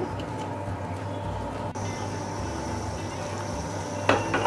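A steel pan of green pea dal boiling on the stove: a steady low bubbling with a constant background hum, and a faint high whine joining a little before halfway.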